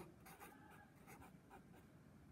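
Faint scratching strokes of a marker pen writing on paper, a series of short strokes as numbers are written.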